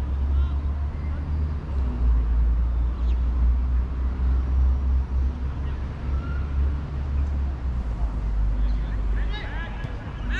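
Wind buffeting the microphone in a steady low rumble, with faint shouts from players on the football pitch now and then.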